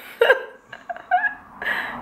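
A woman and a man laughing in several short, broken bursts.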